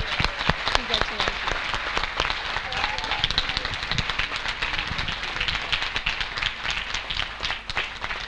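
Audience and people on stage applauding, a dense, steady clatter of many hands clapping, with a few voices faintly mixed in.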